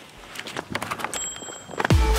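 Running footsteps on pavement: quick, irregular footfalls of people sprinting. Just before the end, electronic dance music with a heavy bass comes in.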